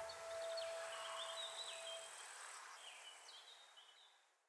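Faint bird chirps over a soft hiss, fading out at the end of a lofi track, while the last sustained piano note dies away in the first half.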